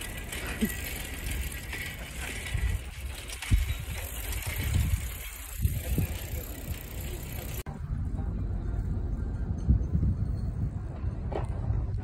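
Bicycle ride recorded on a phone: wind rumbling over the microphone with the bike's knocks and rattles over the pavement. About two-thirds through, the hiss cuts away abruptly and a steadier low wind rumble is left.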